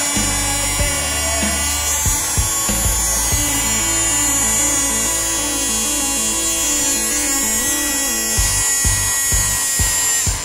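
Small DC hobby motor spinning a plastic propeller on a toy car, a steady high whine, over background music.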